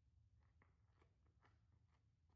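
Near silence: faint room tone with a few very faint, soft ticks about half a second apart.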